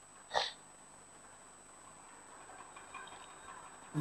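A single short sniff about half a second in, then faint scratching from pens writing on paper in a quiet room.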